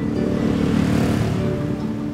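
A motorcycle passing on a city street: engine and road noise swell to a peak about a second in and then fade. Background music with held notes runs underneath.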